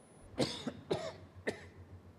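A man coughing three times, about half a second apart, with his hand over his mouth.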